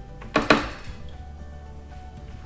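A paring knife clattering as it is picked out of a plastic bin: two quick clinks about half a second in. Soft background music runs underneath.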